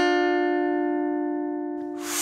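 Guitar chord ringing out and slowly fading, the held last chord of a short run of plucked guitar notes. A brief breathy hiss begins right at the end.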